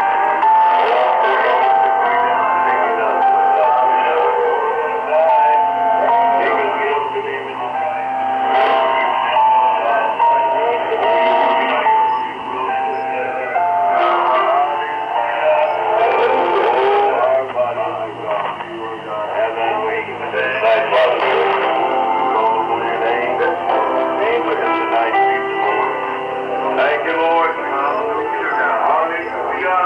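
Shortwave AM radio broadcast of music with a singing voice, playing from a portable receiver's speaker. The sound is narrow and thin, with nothing above the radio channel's upper limit.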